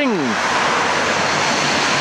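Steady rushing noise of wind and street traffic picked up by a camera moving along a road past a tram. A voice trails off in the first moment.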